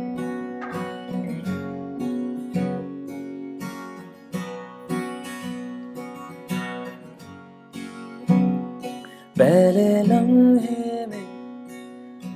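Acoustic guitar strummed in a steady rhythm of chords. A man's voice begins singing over it about nine seconds in.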